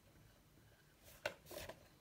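Felt-tip marker writing on a whiteboard, faint, with a few short strokes about a second in as letters are drawn.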